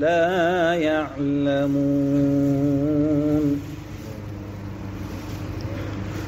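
A male voice chanting a Sufi devotional hymn: a wavering, ornamented phrase, then one long held note that breaks off about three and a half seconds in. A quieter low steady hum remains after it.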